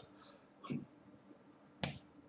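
Hands striking together during sign language, with a softer contact a bit under a second in and a sharp smack near the end.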